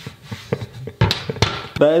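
A man laughing softly in short breathy chuckles, which get louder about a second in, before he starts talking near the end.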